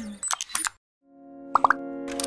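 A short plucked-string logo jingle dies away with a few quick clicking plops and stops. After a brief silence, a bağlama (saz) fades in with ringing held notes and three quick plucked notes just before the end.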